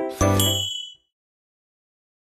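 Closing logo jingle: a short musical sting whose last chord strikes just after the start, with a bright chime ringing over it, and all of it ends about a second in.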